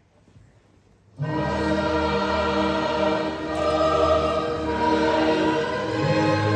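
Near silence, then about a second in music starts suddenly at full level: slow, choir-like music with long-held chords.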